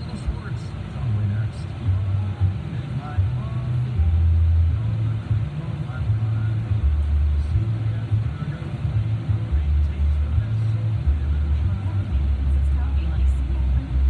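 Car radio playing in the car's cabin: music with a deep bass line that steps from note to note, under faint talk.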